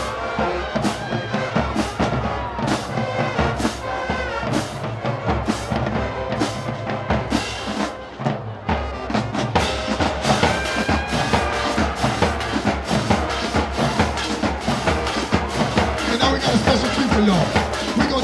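High school marching band playing, with brass and sousaphones over a steady, evenly spaced drum beat. About eight seconds in the music drops briefly, then comes back with denser drumming under the horns.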